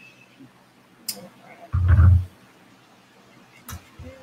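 Handling noise as makeup tools and a hand mirror are picked up and set down: a sharp click, then a loud low thump lasting about half a second, and another click near the end.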